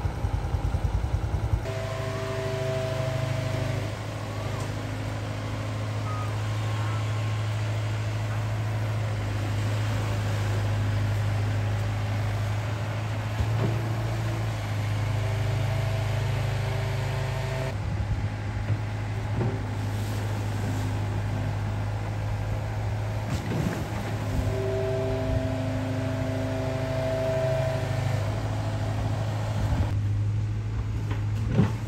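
Diesel engine of a long-reach Hitachi Zaxis excavator on a pontoon barge running steadily, a low drone with a higher whine that comes and goes several times as it works.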